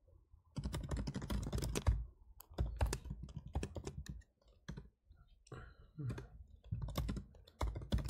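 Computer keyboard being typed on in quick runs of key clicks, pausing briefly a little past halfway.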